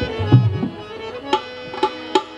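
Rajasthani Langa folk ensemble playing a short instrumental gap between sung lines. There are a few hand-drum strokes at first, then steady held drone tones, with sharp clacks about two-thirds of the way in and again near the end.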